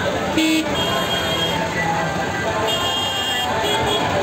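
Motor traffic passing close by, an auto-rickshaw's engine among it, with a short horn toot about half a second in and another pitched horn tone around three seconds, over a background of voices.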